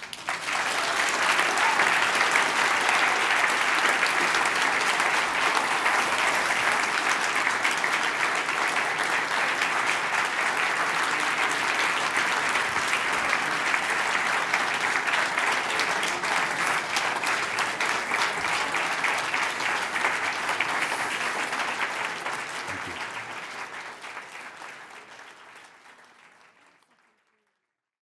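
Audience applauding, a dense sustained clapping that starts the moment the talk ends, holds steady for about twenty seconds, then dies away to silence over the last several seconds.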